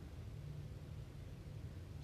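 Room tone: a low, steady hum with no other distinct sound.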